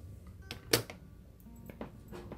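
Small metallic clicks of steel pliers and jewelry wire being handled as the wire is bent, with one sharp click about three-quarters of a second in and a few fainter ones.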